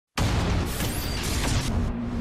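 Television show's intro theme music cutting in suddenly at full loudness, with heavy low booms and whooshing sweeps.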